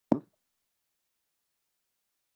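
A single brief pop near the start, lowest-pitched and strongest in its low part.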